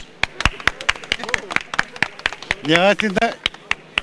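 A few people clapping, separate irregular handclaps throughout, with a man's voice briefly over them about three seconds in.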